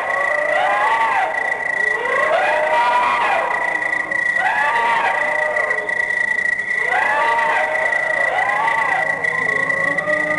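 Electronic soundtrack music of swooping, gliding tones that rise and fall again and again, over a steady high whistle-like tone.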